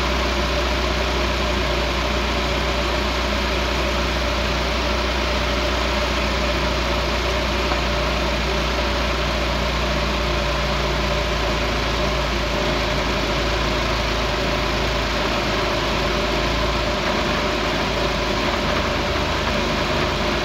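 Engine idling on a Weber 32/36 DGV-type two-barrel carburetor while the idle mixture screw is turned leaner. By the end it has gone past best vacuum into a lean mixture, and the idle note shifts partway through as the revs sag toward about 800 rpm.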